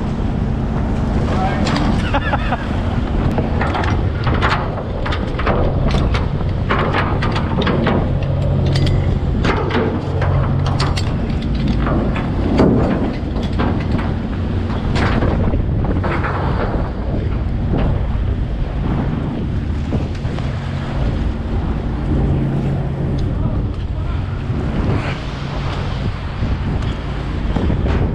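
A trawler's engine and deck machinery drone steadily while chain and steel rigging clank and knock as the trawl gear runs out over the stern, with the wake churning and wind buffeting the microphone.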